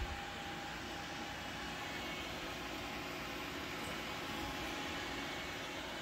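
Steady whir of an open-case desktop PC running: its cooling fans, led by a copper CPU cooler's fan and two GeForce 8800 GTS graphics card coolers, with faint steady tones in the hum.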